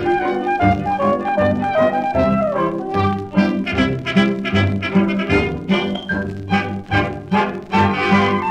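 Instrumental break of a 1936 French music-hall song played by a dance orchestra from a 78 rpm record, shifting melody notes over a steady beat.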